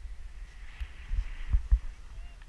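Skis sliding and scraping over packed, tracked snow, over a steady low rumble. A few sharp low thumps come in the second half as the skis knock over bumps.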